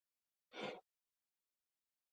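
Near silence, broken once about half a second in by a short, soft breath from the man narrating.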